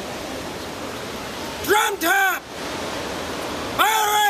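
A man's voice shouting commands to a pipe band: two short calls about two seconds in and a longer one near the end, over a steady hiss of wind and crowd noise.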